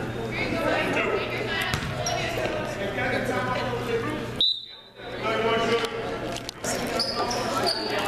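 A basketball bouncing on a hardwood gym floor under the steady chatter of spectators in a large, echoing gym. The sound drops out briefly about halfway through, just after a short high tone, and a few short high squeaks come near the end.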